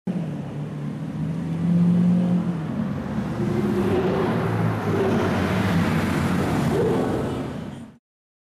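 Lamborghini Aventador's V12 engine running, getting louder about two seconds in, then revving up as the car pulls away, with another rise in revs near the end.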